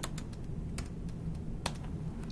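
Computer keyboard keystrokes while code is typed: a few sparse, separate key clicks.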